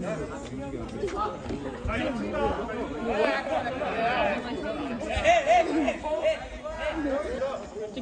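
Several voices talking over one another: casual chatter, with no single clear speaker.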